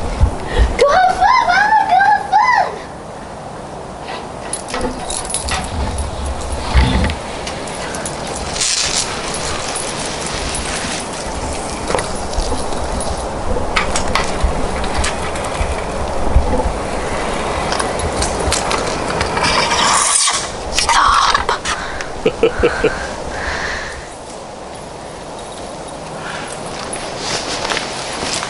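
Casual voices, with a brief high, wavering cry about a second in and a laugh near the end, over irregular outdoor noise and scattered clicks.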